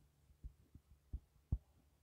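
Faint, irregular low taps and thuds, about five in two seconds, from a stylus writing on a tablet screen, over a faint low hum.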